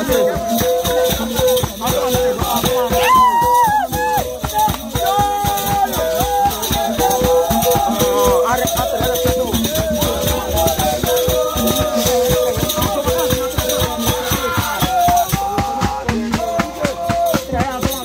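Goli mask-dance music: gourd rattles shaken fast in a steady rhythm, a side-blown horn sounding one held note again and again, and voices singing and calling over them.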